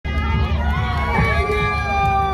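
A live bar band playing: a singer holds one long, slightly wavering high note over a steady low bass beat.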